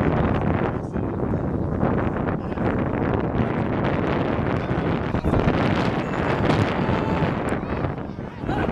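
Wind buffeting the microphone, a loud, steady rushing noise.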